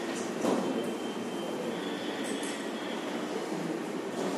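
Steady background noise of a lecture room, with a soft knock about half a second in.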